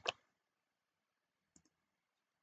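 A quick pair of faint computer clicks about one and a half seconds in, otherwise near silence.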